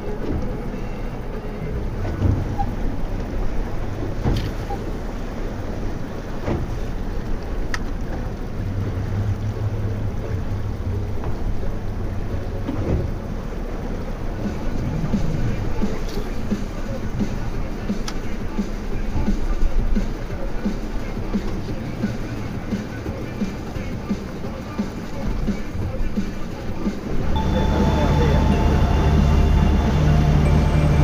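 Wind and sea noise around a small boat drifting in heavy swell, with a few sharp knocks. About 27 seconds in, a louder steady sound starts as the outboard motor comes up to speed and the boat gets under way.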